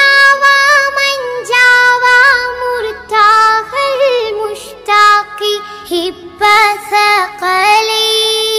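A single high voice singing an Arabic devotional song (nasheed) in praise of the Prophet, unaccompanied, with long held notes ornamented by quick turns.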